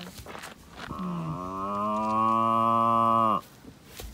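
A calf mooing: one long call of about two and a half seconds starting about a second in, dipping in pitch at first, then held level, and cutting off sharply.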